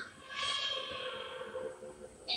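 Animated-film soundtrack playing from a television: a long breathy sound that falls in pitch, over faint music.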